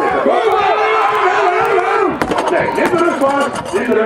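Shouting voices of a crowd and officials, with a heavy thud about two seconds in as an axle loaded with two tractor tyres is dropped onto the concrete platform, followed by a scatter of sharp clicks.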